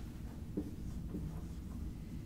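Dry-erase marker writing on a whiteboard: a few faint strokes and taps over a low, steady room hum.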